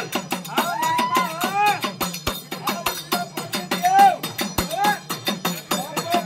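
Devotional folk music at a fast, even beat: sharp percussion strokes with a metallic clanking ring, under a singing voice in gliding, arching notes that is loudest about four seconds in.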